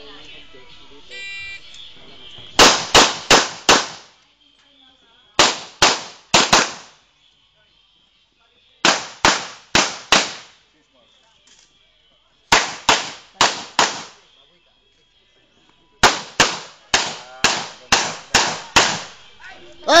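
A shot timer's start beep, then handgun shots fired in quick strings of about four or five with pauses of one to two seconds between them, the last string running to about eight shots.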